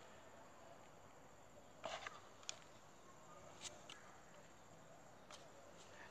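Near silence, broken by four faint short clicks from hands handling plastic headphones.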